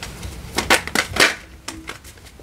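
Tarot deck being handled and shuffled: a handful of crisp card snaps and clicks, the strongest around the middle.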